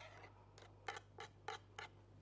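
Wire balloon whisk stirring thick béchamel sauce in a metal saucepan: faint, irregular clicks and scrapes of the wires against the pot, about six in two seconds.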